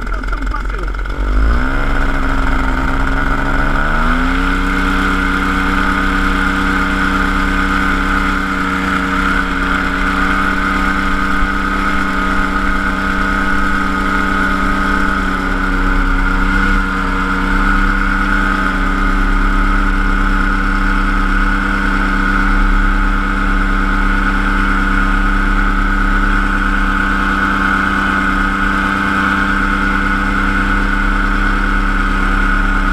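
Paratrike's paramotor engine and propeller throttling up over a few seconds near the start, then held at steady high power during the takeoff run.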